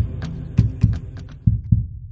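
Heartbeat-like sound effect: low double thumps, a pair about every second, as the electronic music fades out in the first second.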